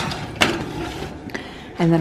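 Metal baking sheet sliding onto a wire oven rack: a sharp clack about half a second in, then scraping and rattling of metal on metal that fades.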